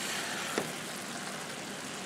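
Green beans in a butter, soy sauce and brown sugar glaze sizzling steadily in a stainless skillet over medium heat, with one light click of the spatula against the pan about half a second in.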